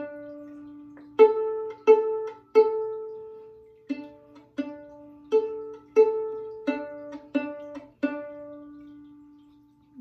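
Violin pizzicato on the open A and D strings, played in time: three plucks on A, two on D, two on A, then three on D. The plucks are evenly spaced, about 0.7 s apart, and the last D is left to ring on and fade.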